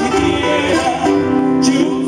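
Live performance of a cueca cuyana on four acoustic guitars, strummed and picked together, with men's voices singing in harmony.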